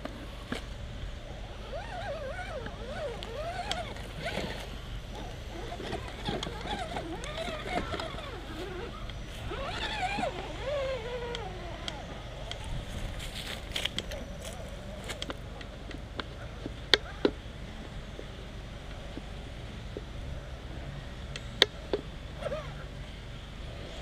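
Small electric motor of an RC rock crawler whining and wavering in pitch as the throttle changes, while the truck crawls up a wooden pallet obstacle. A few sharp knocks come in the second half.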